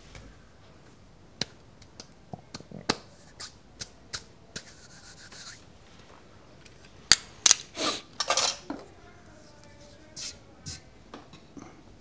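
Scattered clicks, taps and rubbing as tools and objects are handled on a wooden workbench, with a quick cluster of louder clatter about seven to eight and a half seconds in.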